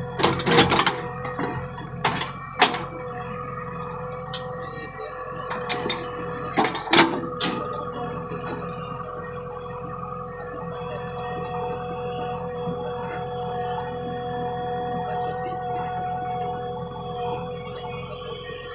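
JCB 3DX backhoe loader's four-cylinder 4.4-litre diesel engine running under digging load with a steady hydraulic whine, and a few sharp clanks from the backhoe bucket and arm in the first seven seconds.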